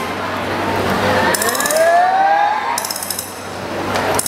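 A break in the stage backing track filled with sound effects: metallic clinking and rattling, with a rising, whistle-like glide in the middle.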